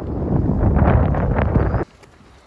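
Strong wind buffeting the microphone: a loud, low rushing rumble that cuts off suddenly near the end.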